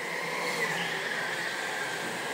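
Go-karts running on an indoor track, heard as a steady high whine that drifts slightly lower, over a general hum of the hall.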